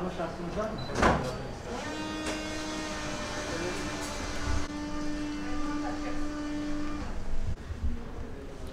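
A steady, fixed-pitch machine hum with a buzzy edge, starting about two seconds in and cutting off about five seconds later. Low voices and a brief clatter come before it.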